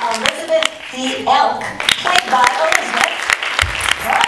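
Audience clapping, many separate hand claps at an uneven rate, with voices talking among them.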